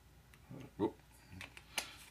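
Quiet handling of a small plastic dropper bottle of thinner over a paint jar, ending in one sharp click near the end.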